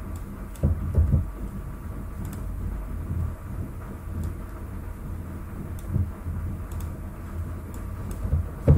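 Steady low hum and rumble of room or microphone noise, with a few dull thumps about a second in and again near six seconds. Faint clicks of a computer mouse and keyboard come as text layers are being edited.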